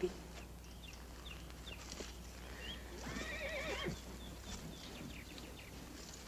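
A horse neighs once, a wavering whinny about a second long, midway through.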